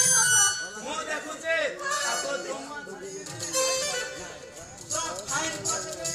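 A voice over background stage music.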